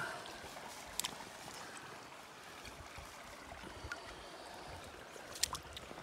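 Steady rush of flowing river water, with two short sharp clicks, one about a second in and one near the end.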